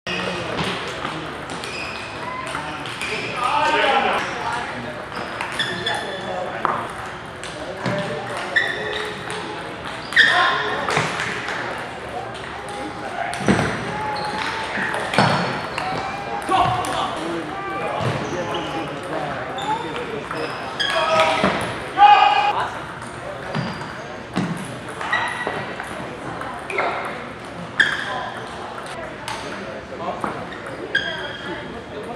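Table tennis balls ticking off tables and paddles, an irregular scatter of short sharp pings from several tables in play in a large hall.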